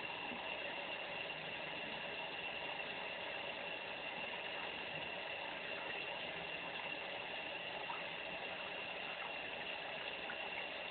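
Steady, even background hiss with no distinct events, and one faint tick near the end.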